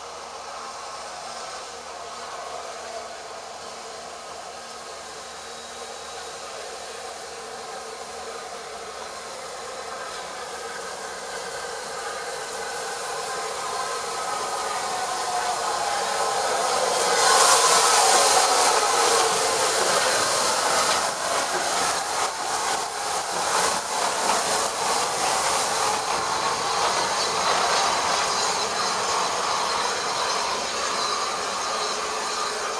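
SR Merchant Navy class steam locomotive 35028 Clan Line, a three-cylinder Pacific, hauling a train of Pullman coaches: it approaches growing steadily louder and is loudest as it passes close about seventeen seconds in. A rapid run of clicks follows for several seconds as the train rolls by, then a steady rolling noise.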